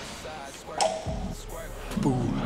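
Rubber-coated 25 kg weight plate clanking once, sharply, against a plate-loaded gym machine about a second in, followed by a dull knock, over background music.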